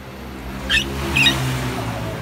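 A puppy giving two short, high squeals about half a second apart.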